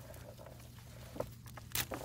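Faint handling of an uprooted peanut plant over a rubber tub, with two light taps of pods dropping into the tub, the sharper one near the end.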